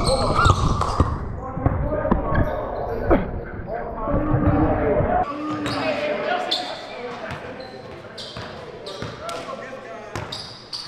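Basketball bouncing on a hardwood gym floor, with players' indistinct voices echoing in a large hall. The sound is loud and rumbling for about the first five seconds, then drops to quieter scattered bounces and clicks.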